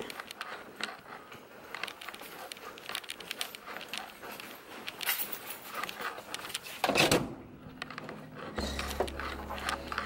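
A bunch of keys jingling in a quiet hallway, a steady run of small clicks and rattles. A louder rustle or bump about seven seconds in, and a low steady hum starts near the end.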